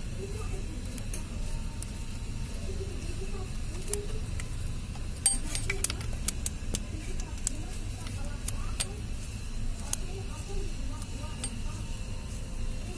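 Scattered sharp metallic clinks and taps of hand tools against engine parts while the timing belt and water pump are fitted. Under them runs a steady low hum, with faint voices in the background.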